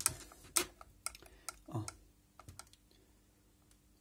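Irregular sharp clicks and taps of small metal levers and parts as the washer mechanism of a 1978 Cadillac Eldorado's windshield wiper motor is worked by hand, the pawl being pushed toward the toothed wheel; the clicks come in the first two and a half seconds, then it goes nearly quiet.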